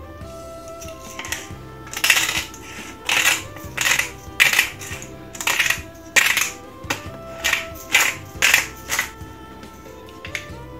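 A glass pepper shaker shaken over a bowl of salad: about a dozen sharp, crisp shakes a half-second to a second apart, starting about two seconds in, over soft background music.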